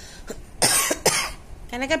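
A person coughs twice, about half a second apart, then a voice starts speaking near the end.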